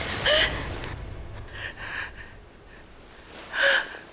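A woman gasping and breathing hard as she wakes with a start from a nightmare. A short cry comes just at the start, ragged breaths follow, and one sharp, loud gasp comes near the end.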